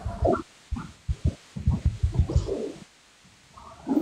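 Choppy, garbled snatches of a voice over a live-stream call, breaking up because the connection's data is freezing. The sound comes as irregular low thumps and muffled fragments, and drops out almost completely near the end.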